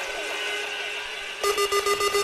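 Quiet breakdown in a drum and bass DJ mix. The echoing tails of a swept synth sound fade out, then about one and a half seconds in a steady buzzing synth tone with fast, even ticking comes in.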